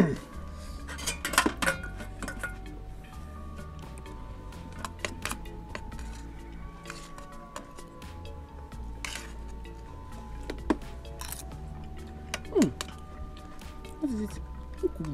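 Spoons clinking and scraping on dinner plates as people eat, in scattered short clinks. Soft background music with sustained tones plays under them.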